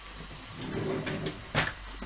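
Soft handling rustle, then a single sharp knock about one and a half seconds in, as of something hard being set down or shut in a small kitchen.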